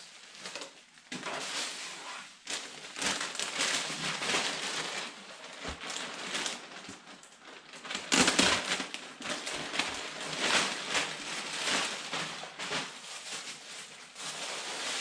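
Clear plastic packaging bag crinkling and rustling as new motocross pants and jersey are handled and pulled out of it, loudest about eight seconds in.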